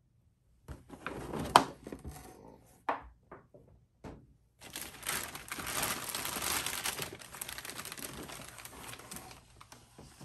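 Cardboard box being handled, with knocks, scrapes and one sharp knock, then a large thin plastic bag crinkling and rustling steadily for about five seconds as hands pull it off a figure.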